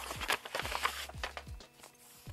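Paper rustling and crinkling as a manila envelope is handled and paper sewing-pattern pieces are pulled out of it, over soft background music with a steady beat of about two low thuds a second.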